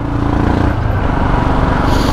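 Royal Enfield Himalayan's single-cylinder engine running steadily while the motorcycle is ridden along, getting a little louder over the first half second.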